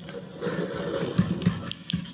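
Ratchet wrench turning the hold-down bolt of a valve spring compressor tool on a cylinder head: a run of rapid mechanical clicking, with a few sharper clicks near the end.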